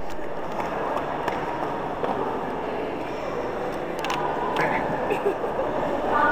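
Background crowd chatter from many people talking at once, with a few short clicks about a second in and again about four seconds in.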